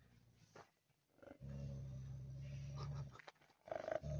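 Tibetan mastiff giving a deep, steady, lion-like growl that lasts nearly two seconds. A second growl starts near the end.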